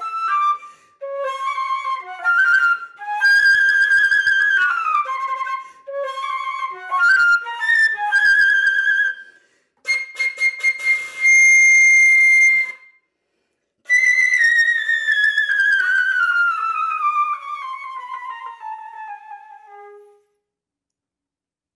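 Solo concert flute playing a slow, plaintive memorial piece: quick runs of notes, a loud held high note, a short pause, then one long line that slides downward and fades away near the end.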